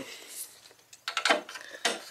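A short cluster of sharp clicks and knocks from hands handling objects, starting about a second in.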